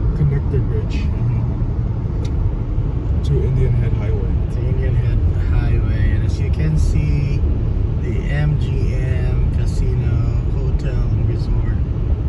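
Steady road and engine rumble inside a car cruising on a highway, with indistinct talking over it at times.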